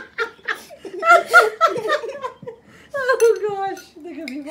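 Young girls laughing in quick repeated bursts, loudest about a second in, then a longer voice that falls in pitch near the end.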